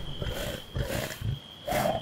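A wolf growling in three short bursts, over a faint steady high-pitched tone.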